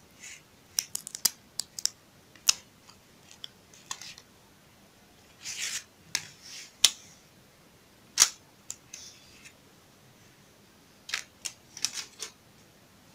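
Stiff clear plastic sheet (gelatin paper) being handled and flexed on a table: an irregular string of sharp clicks and crackles with a few short rustles, loudest about a third of the way in and again near the end.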